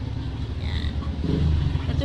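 Low, steady rumble of a motor vehicle engine, growing a little louder in the second half.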